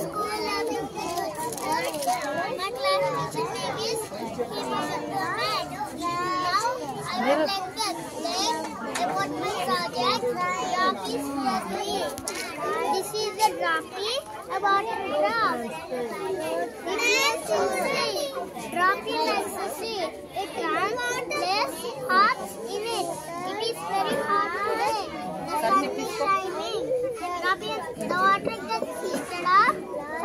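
Young children's voices chattering all around at once, a steady hubbub of overlapping kids' talk and calls.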